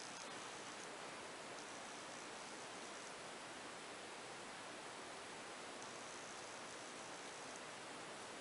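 Faint, steady hiss of background noise: room tone and microphone hiss, with no distinct sound events.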